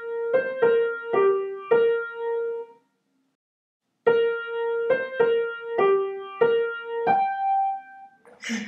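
A keyboard instrument plays a short, simple melody one note at a time, each note struck and fading. It comes in two phrases with a pause of about a second between them, and the second phrase ends on a held higher note.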